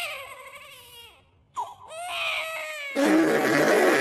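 Cartoon character's wordless crying: two drawn-out wails that fall in pitch, then from about three seconds in a louder, rougher cry.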